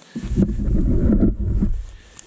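A gust of wind buffeting the microphone: a loud, low rumble that starts just after the beginning and dies away near the end.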